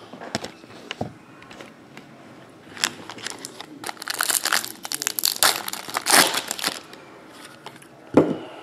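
A foil trading-card pack wrapper being torn open and crinkled by hand. A few light handling clicks come first, then a dense crinkling rustle builds about three seconds in and runs for several seconds before dying down near the end.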